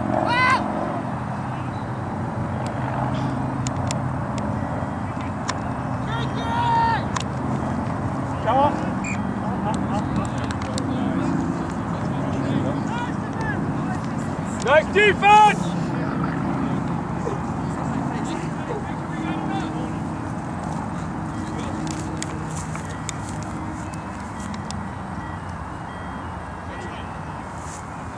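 Scattered distant shouts and calls from rugby players on the field, the loudest a pair of calls about fifteen seconds in, over a steady low rumble.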